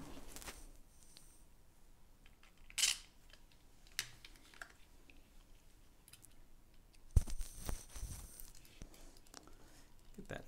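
Small handling sounds of machine screws and 3D-printed plastic parts as a fan adapter is screwed together: a brief scrape about three seconds in, a single click a second later, and a cluster of light knocks and clicks about seven seconds in.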